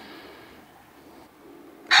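Quiet room tone in a pause between lines of dialogue, with a spoken word starting at the very end.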